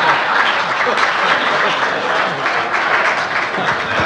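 Audience applauding steadily in response to a joke's punchline, with a few voices among the clapping.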